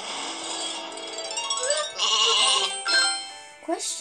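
Cartoon app soundtrack: light music with a sheep bleating sound effect over it, the loudest part about halfway through.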